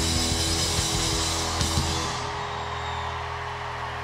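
Live rock band playing loud distorted electric guitars over a drum kit; about two seconds in the drumming stops and a low sustained chord holds on.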